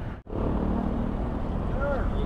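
Steady road traffic noise from a small hatchback car driving past on a concrete road, its engine and tyres humming at an even level. The sound cuts in abruptly just after the start.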